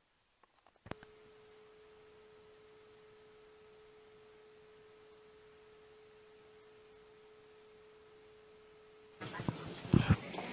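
A faint, steady electronic tone on a single mid pitch, like a test tone. It is switched on with a click about a second in and cuts off suddenly near the end, where room noise and a knock come back.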